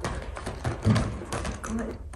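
Scattered light taps and clicks of a border collie's paws stepping onto a raised fabric dog cot.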